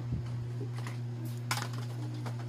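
Light plastic clicks and taps of toy grocery pieces being handled at a toy shop stand and plastic basket, a few separate clicks with the sharpest about one and a half seconds in, over a steady low hum.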